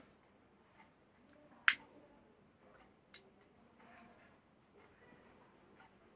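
Spoon stirring a thick batter in a steel bowl, mostly quiet, with a sharp clink of the spoon against the bowl a little under two seconds in and a smaller one about three seconds in.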